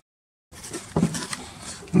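Half a second of dead silence at an edit cut, then faint background hiss with a few light knocks and short bits of a man's voice.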